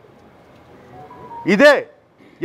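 A pause in a man's speech, holding only faint background noise and a couple of faint brief tones. About one and a half seconds in, he says one word in a raised voice.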